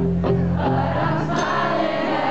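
Pop-punk band playing live on a concert stage, full band with singing, heard loud and steady from within the crowd.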